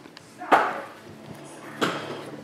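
Two sharp knocks a little over a second apart, the first louder, as a stack of trading cards is picked up and handled against the tabletop.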